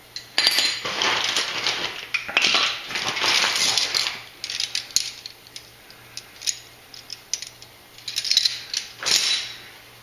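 Metal wrenches clinking and rattling together as they are rummaged through: a long stretch of rattling, then scattered clinks, then a second short rattle near the end.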